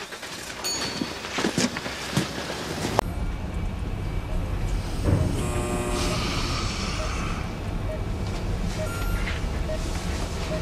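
Hospital intensive-care room ambience: a steady low hum and hiss of bedside machines, with a patient monitor giving soft regular beeps under a second apart from about halfway in. It comes in abruptly after a few seconds of quiet outdoor ambience with a few light rustles.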